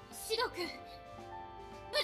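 Anime film soundtrack: background music of held notes, with a character's short shouted call of a name, "Sh-Shidou-kun!", about half a second in.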